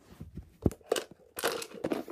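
Handling noise as a small plastic toy wheelie bin is picked up: a sharp knock about two thirds of a second in, a lighter knock soon after, then a rustling scrape near the end.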